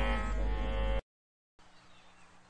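The last second of a Tamil devotional song: sustained drone-like notes fading after the percussion stops, then cut off abruptly about a second in, leaving near silence.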